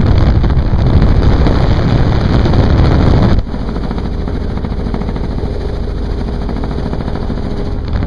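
Doors-off helicopter in flight: wind buffeting the microphone over the rapid chop of the rotor and the engine noise. A little over three seconds in, the wind rush drops suddenly, leaving a steadier, quieter rotor and engine sound.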